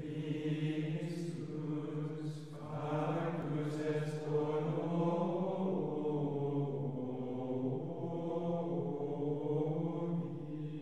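Voices chanting slowly in unison on long, sustained low notes, with a few soft hissing consonants of the sung words.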